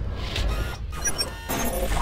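Sound design of an animated logo reveal: a deep low drone with whooshes and glitchy mechanical clicks and sparkling chimes over it.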